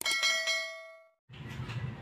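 Notification-bell chime sound effect struck once, ringing with several bright tones and fading out within about a second. Faint background noise comes in near the end.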